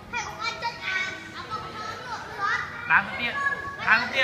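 Children's voices: high-pitched calls and chatter of children at play, with several short louder calls.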